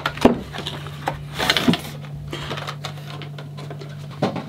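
Glass wine bottle being slid out of a cardboard box and laid on a wooden table: a couple of sharp knocks near the start, then scraping and rustling about halfway through.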